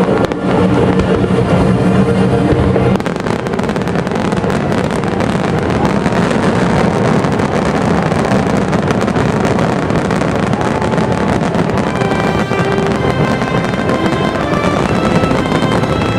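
A dense barrage of fireworks, many aerial shells bursting and crackling in quick succession, with music playing alongside. The music's held notes stand out most in the first few seconds and the last few.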